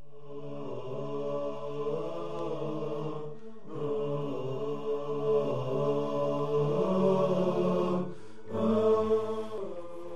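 Vocal theme jingle: voices chanting long held notes that glide slowly in pitch, in phrases broken by short pauses about three and a half and eight seconds in.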